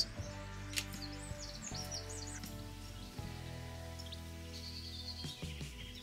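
Quiet background music of held, slowly changing chords. In the first half, faint bird chirps sound high above it.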